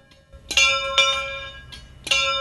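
A small chapel bell in a brick bell gable, struck twice about half a second apart, each stroke ringing on and slowly fading.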